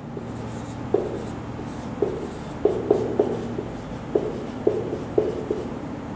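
Marker pen writing on a whiteboard: a series of short, irregular taps and strokes of the felt tip against the board.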